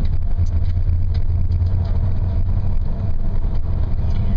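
Steady low rumble of a bus engine and tyres on the road, heard from inside the moving bus.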